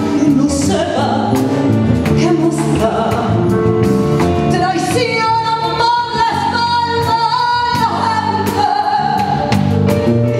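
A woman singing a copla-style song with a live band of bass, drums and horns. About halfway through she holds one long high note for some three seconds.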